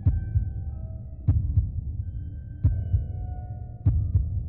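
A slow heartbeat-like pulse: paired low thumps, lub-dub, repeating about every second and a quarter, over a steady low hum with a few faint held high tones.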